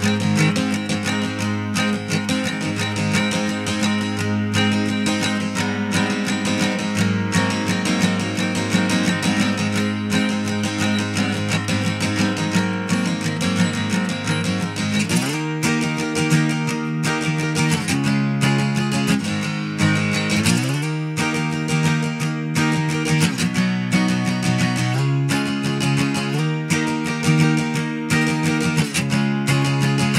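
Castilla Hummingbird-copy six-string acoustic guitar, a 1967–75 lawsuit-era model, being strummed in a steady run of chords. It is freshly restored, with a new bone nut and saddle and new strings. About halfway through, the chords change and the deepest bass notes drop away.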